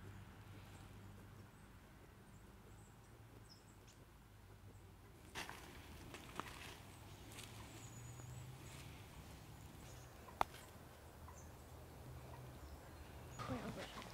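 Quiet outdoor ambience by a lake: a faint steady low hum, a few soft clicks, and faint high chirps near the middle.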